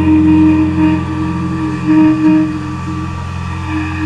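Closing drone of a live pop song: steady held notes, a low hum under a higher note that breaks off and returns, slowly fading.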